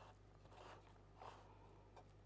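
Near silence: studio room tone with a low steady hum and two faint, brief, soft sounds about half a second and just over a second in.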